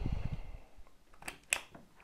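A mains plug being pushed into the socket of a plug-in energy meter: a low handling rumble at first, then two sharp clicks about a second and a half in, the second the louder.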